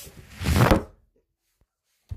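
A smartphone falling over onto a desk, heard through its own microphone: one short scuffing thud about half a second in.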